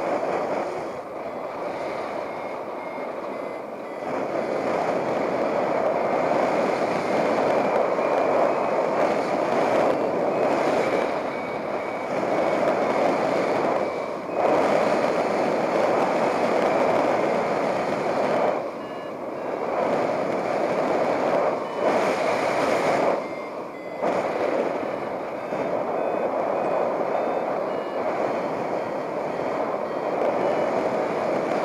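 Airflow rushing over the microphone of a paraglider in flight, a steady noise that dips briefly a few times, with a variometer's short beeps at shifting pitch over it, the sign of climbing in a thermal.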